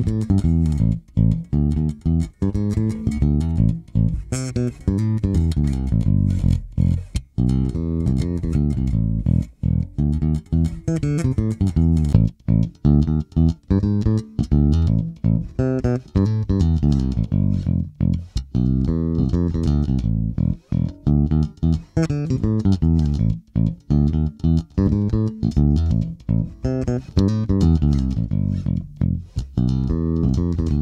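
Electric bass, a Sterling by Music Man S.U.B. Ray4, playing a fingerstyle test riff of quick plucked notes. Its onboard preamp is set for a mid scoop, with the mids cut about half and bass and treble boosted. Partway through, the stock pickup gives way to a Nordstrand Big Blademan pickup wired in parallel.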